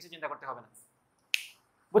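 A man speaking briefly, trailing off, then a pause broken by a single sharp click about a second and a half in.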